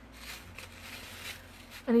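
Hands pressing and flattening kinetic sand on a paper plate: a faint, soft rustling and scraping.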